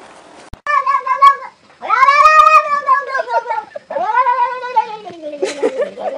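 A cat yowling: four drawn-out meows, the second the longest, each rising and then falling in pitch, the last sliding downward.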